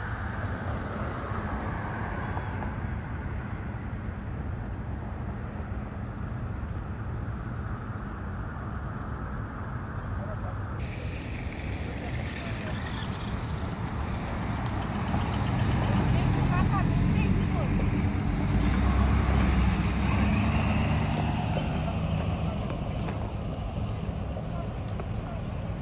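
Steady traffic noise, with a vehicle engine running close by and growing louder for several seconds from about fifteen seconds in before easing off.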